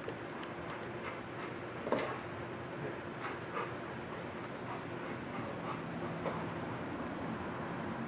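Footsteps of officers and a police dog going through a doorway: scattered light clicks and knocks, the sharpest about two seconds in, over a steady low hum.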